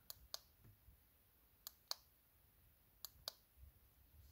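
Button on a handheld digital luggage scale clicking, pressed three times, each press a pair of short sharp clicks; the presses step the display between kilograms and pounds.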